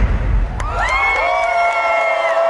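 The beat cuts out, and about half a second later a single long call rises and is held steady over the crowd's cheering, with the rest of the arena quiet under it.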